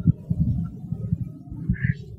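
Microphone handling noise: irregular low thumps and rumbles, with a short hiss near the end.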